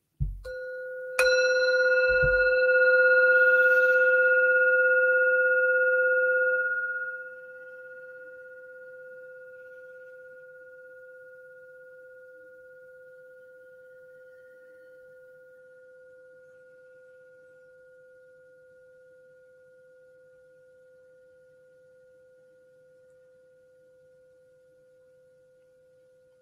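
Singing bowl struck once about a second in, ringing with several steady overtones over a low main tone. It stays loud for about five seconds, drops suddenly, then goes on humming and fades slowly to faint.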